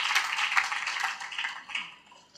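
Audience applauding, the clapping thinning and fading out near the end.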